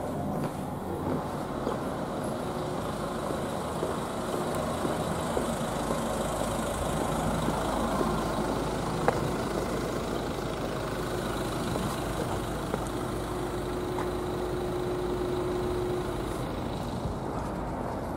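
Steady outdoor hum of road traffic and vehicle engines idling, with one faint click about halfway through.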